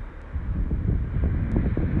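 Wind buffeting the microphone: a low, uneven rumble between sentences.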